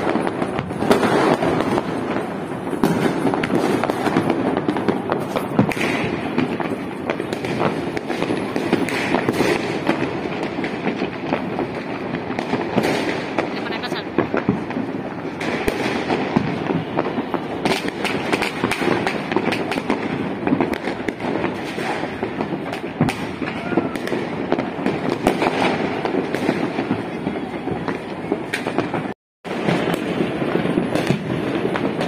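Many fireworks and firecrackers going off at once across a city, a dense, continuous crackle of overlapping pops and bangs. The sound cuts out for a moment near the end.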